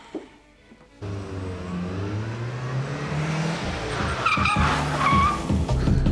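A car being driven hard: the engine revs up with its pitch climbing steadily, then the tyres squeal twice, about four and five seconds in, over the engine's rumble.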